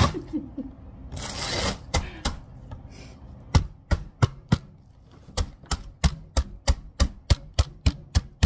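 Rubber mallet striking a zip-lock bag of Oreo cookies on a stainless steel bench, crushing them: a few scattered knocks, then a run of sharp blows about three a second, with a brief pause near the middle.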